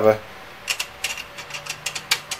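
Light metallic clicks and clinks, about ten small ticks over a second or so, from a steel connecting-rod cap and its rod bolt nuts being handled and seated on the crankshaft journal.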